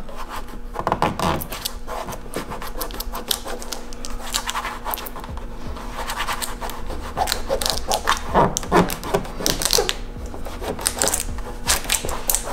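Fingers and thumb rubbing and pressing vinyl tint film down onto a plastic headlight lens: irregular scratchy rubbing with many small crackles and clicks from the film, over a faint steady hum.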